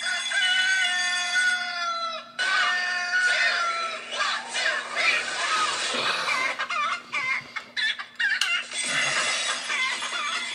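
Rooster crowing and clucking played by a smartphone alarm. It cuts in suddenly with two long drawn-out crows, then breaks into busier clucking and calling.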